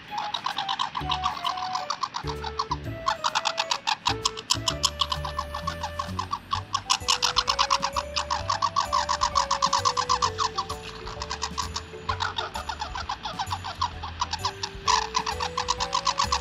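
Light background music with a simple melody. Over it, a rapid crackly crunching comes and goes in runs of a few seconds: a squirrel gnawing and cracking nuts close to the microphone.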